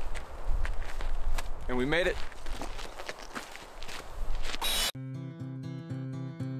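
Footsteps on dry dirt ground, with a brief voice sound about two seconds in. About five seconds in, the sound cuts to background music with long held notes.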